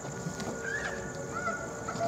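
Faint, indistinct voices in the background over a steady room hum, with a few short rising and falling pitch glides.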